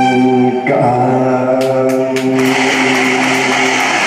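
A man singing live into a microphone, holding long notes over electronic keyboard accompaniment; a hiss joins in the upper range about halfway through.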